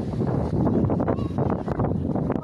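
Wind buffeting a phone's microphone: an uneven low rumble, with a faint voice briefly in the middle.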